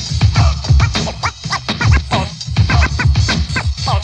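Turntable scratching in an old-school hip-hop track: a record is worked back and forth in quick rising-and-falling strokes over a heavy drum beat.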